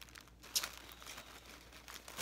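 Faint rustling and crinkling, as of something being handled, with a brief sharp tap about half a second in.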